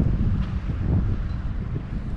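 Wind buffeting the microphone: a gusty low rumble that rises and falls, with a faint steady hum underneath.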